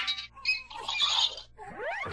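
Pitch-altered cartoon sound effects from a TV channel logo ident: a burst of squeaky, chirping noises, then quick swooping pitch glides near the end.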